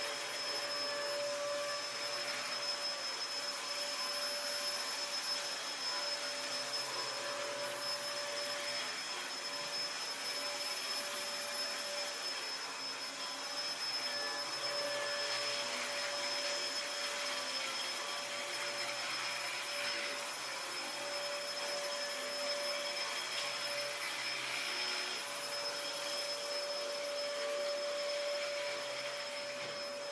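Upright vacuum cleaner running steadily on carpet: a rushing of air with a steady mid-pitched hum and a high whine over it, unchanged throughout.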